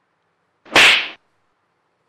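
A single short, sharp burst of noise about half a second long, a little under a second in, on an otherwise silent track.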